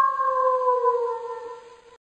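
A recorded wolf howl: one long call that slides slowly down in pitch and fades away near the end.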